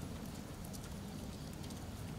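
Low rumble of wind and handling noise on a moving handheld microphone, with a few light scattered clicks such as footsteps or bicycle rattle.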